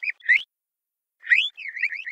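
A cartoon bird character chirping in high, whistly notes that glide up and down, answering like speech: one short burst at the start and another from just past a second in.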